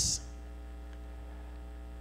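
Steady electrical mains hum, with a faint ladder of higher buzzing tones above it. The tail of a spoken "s" is heard at the very start.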